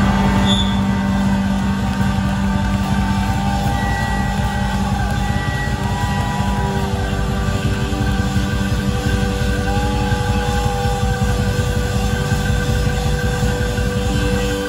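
Live rock band holding out a drawn-out ending at full volume: electric guitars sustain droning notes and wailing tones that bend and slide in pitch over a steady low drone.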